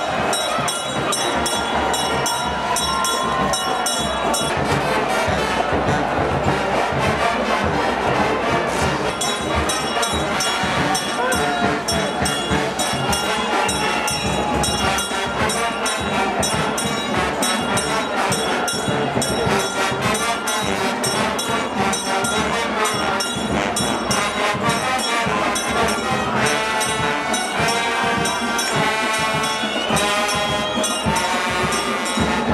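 Brass band playing, with a large crowd clapping and cheering along over it.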